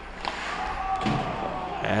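Ice hockey rink sounds during play: a low steady hiss of skating, with two light clicks of stick on puck, a quarter second and a second in, and faint distant voices.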